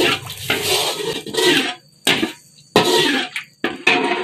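Blended spice paste sizzling as it fries in a wok while a metal spatula stirs it, the hiss coming in bursts with the strokes and breaking off briefly in between.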